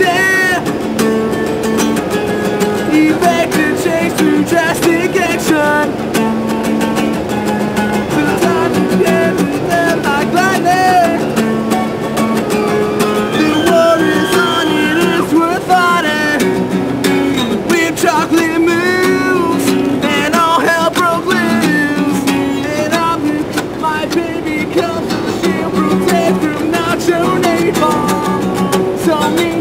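Singing over guitar accompaniment: sustained strummed chords with a wavering sung melody above them.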